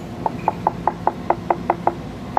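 Rapid knocking on a tile, about five taps a second, each with a short hollow ring: the tile is hollow underneath, no longer bonded to a cracked base, where water is leaking through.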